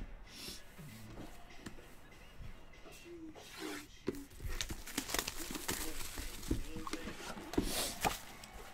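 Hands handling a shrink-wrapped trading-card box: faint rustling of the plastic wrap with scattered light taps and clicks as the box is turned over.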